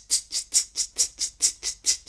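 Programmed drum-track hi-hat playing steady eighth notes at 133 bpm, two crisp ticks per beat, about four and a half a second.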